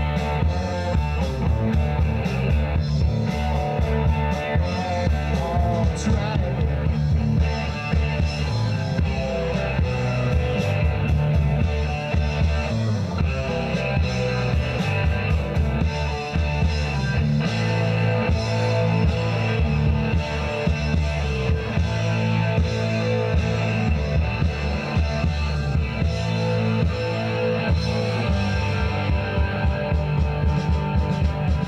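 Live rock band playing: electric guitars, bass guitar and drum kit, loud and continuous with a steady beat.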